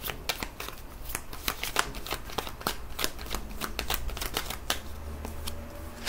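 A deck of tarot cards being handled and shuffled by hand: a quick, irregular run of sharp card clicks.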